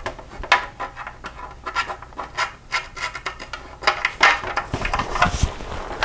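Hands handling the plastic rear fender of a 1983 BMW R100RS and its bolt hardware: irregular rubbing and scuffing on the plastic, with small taps and clicks.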